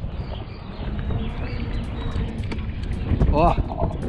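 Wind buffeting the microphone over the rumble of knobby mountain-bike tyres rolling on asphalt while riding an e-bike. A brief voice sound comes near the end.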